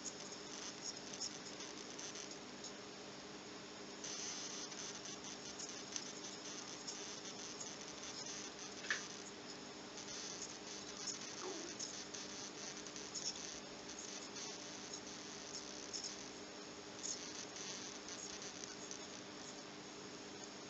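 Faint steady hum with a light, continuous crackle from a valve radio chassis, with a short whistle sliding down in pitch about eleven seconds in.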